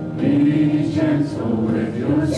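A woman and men singing a song together, holding each note before moving to the next.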